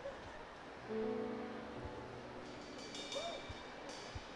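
Brief instrumental notes from a rock band's stage between songs: a held low note starting about a second in, then a few high ringing tones near the end.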